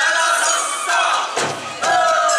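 Live Bon Odori festival music from the ensemble on the stage: a high, held bamboo flute melody whose notes bend and fall, with drum strokes and voices calling out over it.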